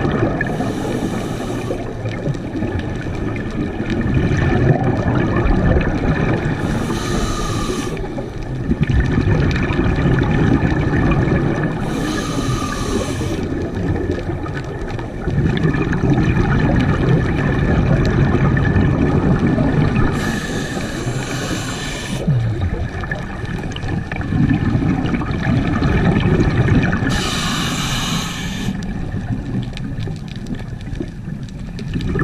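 Scuba diver breathing through a regulator underwater: five short hissing inhales, about one every six or seven seconds, each followed by a long low bubbling rumble of exhaled air.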